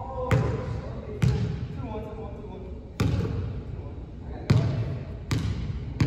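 Basketball bouncing on a hardwood gym floor: irregular thuds about every one to two seconds, each with a short echo of a large hall.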